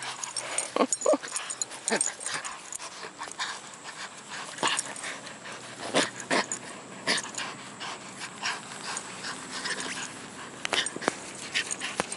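A small dog tugging and shaking a plush toy, with scuffling and rustling throughout. Two short pitched sounds come about a second in.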